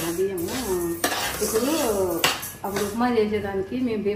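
Steel spoon clinking and scraping against a steel pan as grains are stirred on the stove, with a few sharp metal clinks, while a voice talks over it.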